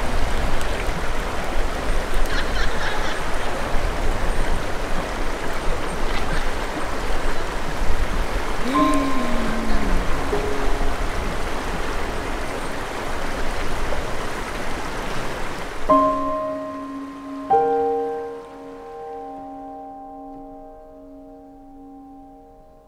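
Steady rush of a shallow, fast mountain river, the Azusa, running over stones. About sixteen seconds in the water sound fades out and gentle piano music with held notes takes over.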